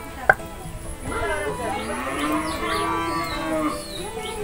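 A cow mooing: one long call of about three seconds that starts about a second in, rising in pitch and then held. A single sharp knock sounds just before it.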